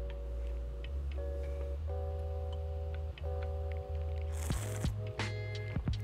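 Background music: sustained chords that change every second or so over a steady bass, with a brief hiss about four and a half seconds in.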